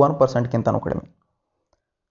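A man lecturing in Kannada for about a second, then the sound cuts off suddenly to silence.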